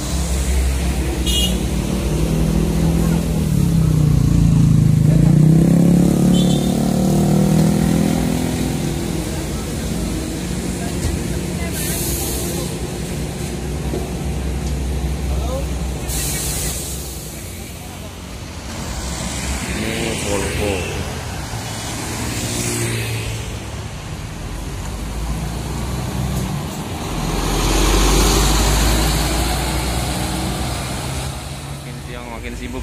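Large diesel coach buses running close by at a roadside stop, with a low steady drone. One engine swells and falls away a few seconds in, and short hissing bursts come through at intervals.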